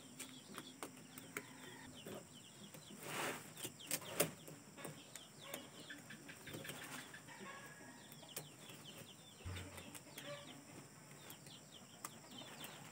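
Faint rustling and clicking of a green plastic mesh tube and a yellow plastic strap being handled as the strap is threaded through and tied to form a fish trap. The loudest rustle comes about three seconds in.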